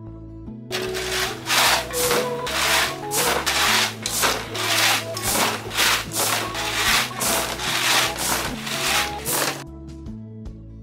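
Rhythmic scraping strokes, about two a second, starting about a second in and stopping just before the end, over gentle background music.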